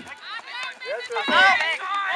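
Several voices shouting at once, high-pitched and excited, swelling louder about a second in.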